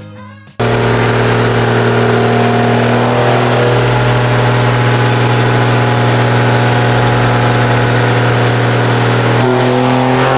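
Dodge Ram pickup's Cummins diesel engine running loud and steady on a chassis dyno, then climbing in pitch near the end as a dyno pull begins. A moment of music cuts off just before the engine comes in.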